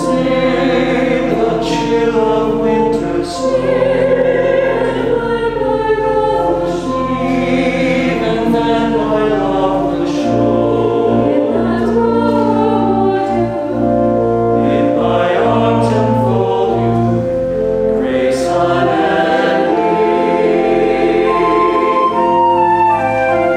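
Mixed church choir singing a slow anthem in held chords, accompanied by pipe organ with long sustained bass notes.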